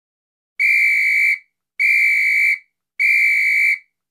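A high steady electronic beep, sounded three times, each about three-quarters of a second long with short silent gaps between.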